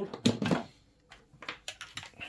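Clicks and knocks of a charger plug and cable being handled and pushed into a wall socket: a cluster of louder knocks at the start, then a few sharp single clicks near the end.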